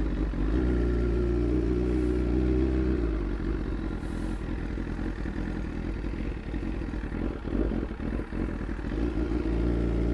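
BMW S1000RR superbike's inline-four engine idling just after being started. From about three seconds in the note turns rougher and uneven as the bike is moved, then evens out near the end.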